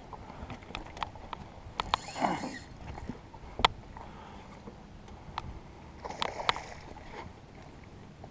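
Scattered sharp clicks and light knocks around a fishing boat during the fight with a hooked fish, with a short rush of noise about two seconds in and again around six seconds.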